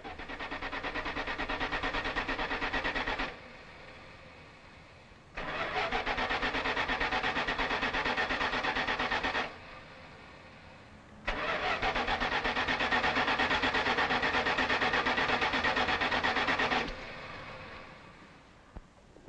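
A car's starter cranking the engine in three long tries with short pauses between them, a rapid even churning. The engine never catches: the car will not start.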